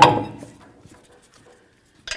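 Alloy wheel clunking onto the hub studs: one metallic knock right at the start that rings briefly and fades within about half a second.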